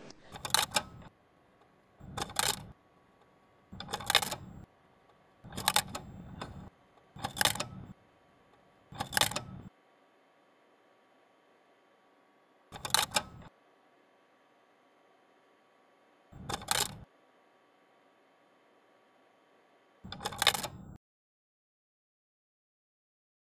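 A series of short, sharp mechanical clacking sound effects, nine in all: the first six come about every second and a half to two seconds, and the last three are spaced further apart, about every three and a half to four seconds.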